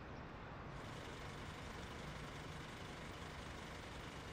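Steady city-street traffic noise, strongest in the low range, with a brighter hiss coming in a little under a second in.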